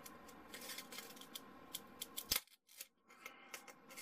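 Faint crackling and a few sharp ticks from XPS foam strips being flexed and pried apart by hand at a superglued joint, the glue pulling off the foam's top surface.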